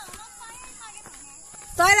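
Quiet outdoor background with faint distant voices, then a man starts speaking close to the microphone near the end.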